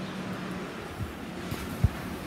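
Wind rushing over a phone microphone, with a few low bumps from the phone being handled as it is turned around; the loudest bump comes just before the end.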